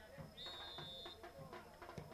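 Faint football-pitch ambience with one short, high, steady whistle blast about half a second in, lasting under a second: a referee's whistle.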